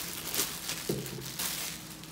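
Clear plastic packaging bag crinkling and rustling as it is pulled off a coffee maker's glass carafe, busiest in the first half and thinning out toward the end.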